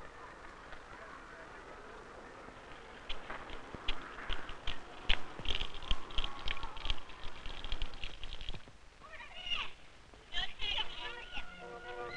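Children playing, with scattered calls and shouts that grow louder from about three seconds in. Near the end a hand-cranked barrel organ starts up with a steady tune.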